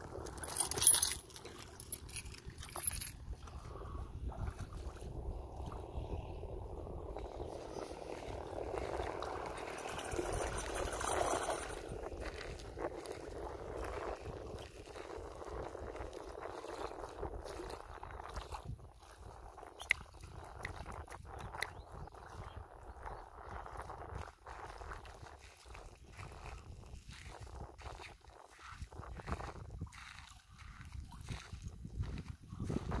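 Shallow water lapping and sloshing around a German Shepherd wading at a pebbly shoreline, with one sharp louder noise about a second in.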